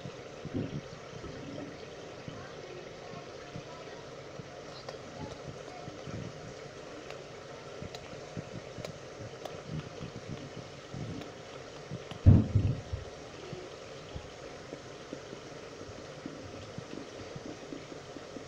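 Tomato sauce simmering in a saucepan on the stove, a steady low bubbling and crackling. A single thump about twelve seconds in.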